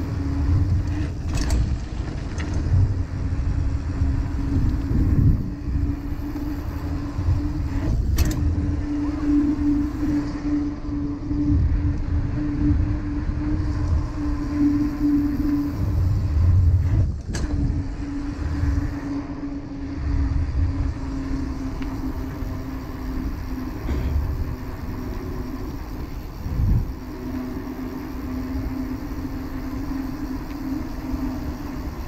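Kona mountain bike rolling along a packed dirt lane, heard from a camera mounted on the rider: tyre rumble and wind buffeting the microphone, with a steady hum and a few sharp knocks from bumps.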